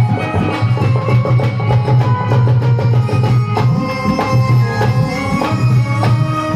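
Live Indian devotional jagran band playing an instrumental passage: a driving drum beat with a heavy bass pulse under sustained keyboard notes, with no singing.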